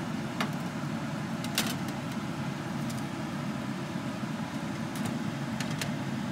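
Metal tongs clicking sharply against a wire roasting rack a few times as pieces of meat are turned over, over a steady low background hum.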